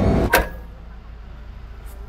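A single sharp click from a switch or lever on a DeLorean's dashboard time-circuit console, after which the displays go dark. A low steady hum carries on in the car's cabin.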